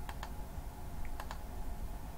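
Two pairs of light clicks about a second apart, computer keys being pressed, over a faint low hum.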